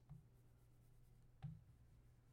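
Near silence: room tone with a steady low hum, broken by one soft click about one and a half seconds in.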